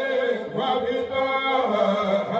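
Men chanting Islamic dhikr (zikr) into microphones, several voices sustaining a melodic chant.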